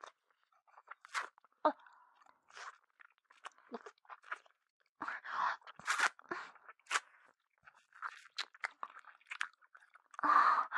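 Close-miked ASMR mouth sounds: irregular wet licking and smacking noises, with a denser run about halfway through.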